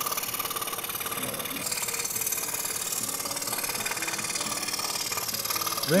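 Scroll saw with a fine blade running steadily while cutting a wooden jigsaw puzzle board with a paper overlay.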